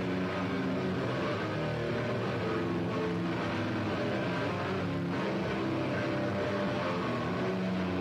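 Rock band playing live at a steady, loud level, with distorted electric guitars carrying a dense wall of sound.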